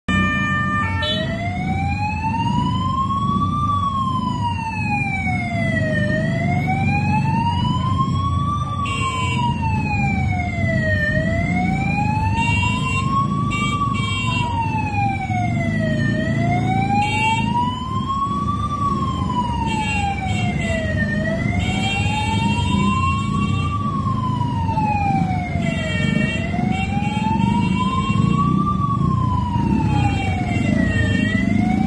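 A siren wailing in a slow, even rise and fall, about five seconds a cycle, over a steady rumble of street noise.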